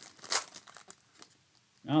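Foil wrapper of a Contenders Optic basketball card pack being torn open by gloved hands: one short rip about a third of a second in, then faint crinkling that dies away.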